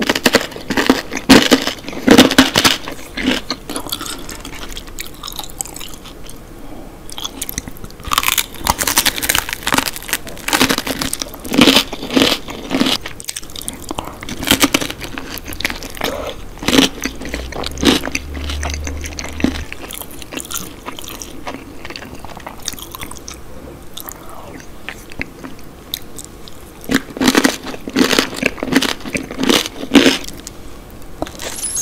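Close-miked eating: bites and crunchy chewing of toasted garlic bread topped with tomato sauce and egg. The crunching comes in bursts, with quieter chewing between.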